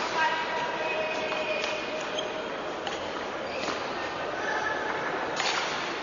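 Table tennis ball struck in a slow rally: a handful of sharp clicks spaced roughly a second apart, with spectators' voices in the hall.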